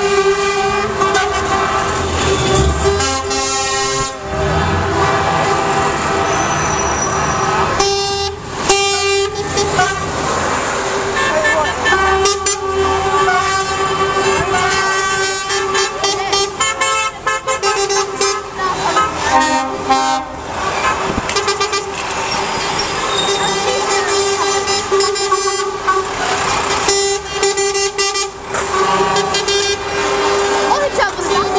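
Lorry air horns sounding again and again, often overlapping in long held tones, as a line of articulated lorry tractor units drives slowly past, over the running of their diesel engines.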